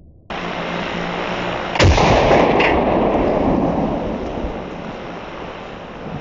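A single .50 BMG rifle shot about two seconds in, followed by a long rolling echo that fades away over several seconds. A steady background noise starts suddenly just before the shot.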